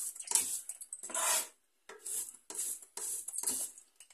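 Chef's knife chopping and crushing garlic on a plastic cutting board: a run of quick knocks, a few a second, with a brief pause in the middle.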